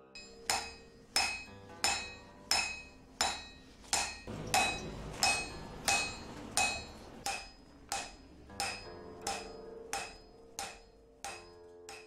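Smith's hammer striking iron on an anvil in a steady, even rhythm, about one and a half blows a second. Each blow rings on with a bright metallic tone.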